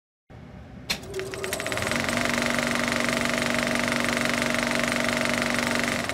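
Sound effect of a vintage film projector starting with a click, then running with a rapid, steady mechanical clatter over a steady hum.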